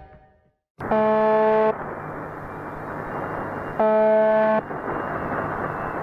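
Shortwave radio reception of the Russian 'Buzzer' station (UVB-76): a short, monotonous buzz tone, about a second long, sounds twice about three seconds apart over a steady hiss of radio static. It starts about a second in.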